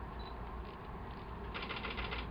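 A quick run of rapid mechanical clicks about a second and a half in, over a steady low rumble.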